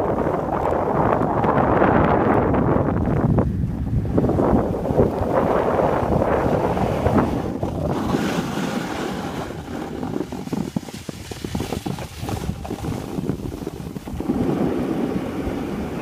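Wind buffeting the microphone over the rushing scrape of skis sliding on packed snow during a downhill run; the noise rises and falls, easing off for a few seconds past the middle.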